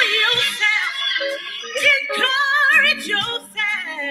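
Music with a woman singing, her held notes wavering in vibrato over instrumental accompaniment.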